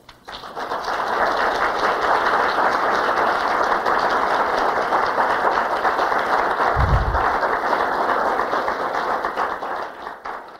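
Audience applause that builds over the first second at the end of a lecture, holds steady, and dies away near the end, with a brief low bump about seven seconds in.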